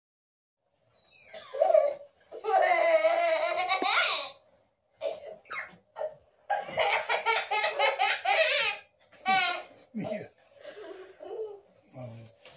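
Toddler laughing hard in bursts: one drawn out for about two seconds, then a long run of quick laughs, with shorter laughs near the end.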